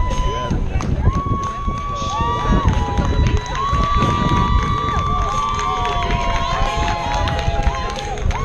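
Horns honking in long, steady blasts at a few slightly different pitches, several overlapping one another, over wind rumbling on the microphone.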